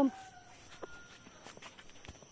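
Footsteps on dry leaf litter along a garden path, light scattered crunches and clicks, with a couple of short, faint bird calls in the background.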